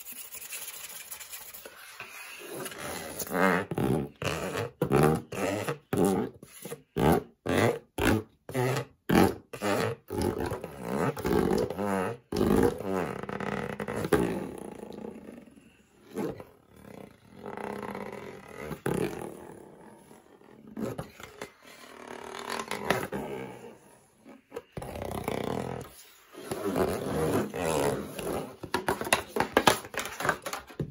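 Fingers scratching and tapping on the plastic casing of a tower fan close to the microphone. The first ten seconds or so are rapid short strokes, followed by longer, steadier rubbing passes.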